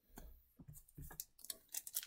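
Faint handling noises from a Pokémon booster pack and cards being picked up and handled: a string of short clicks and crinkles of foil wrapper and card stock.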